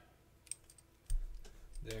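Small handling noises of a metal lock-picking tool and a padlock: one sharp click about half a second in and a few faint ticks, then a low rumble from hands moving about a second in.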